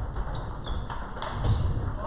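Table tennis balls clicking off paddles and tables, a scattered series of short, sharp clicks, the loudest about a second and a quarter in.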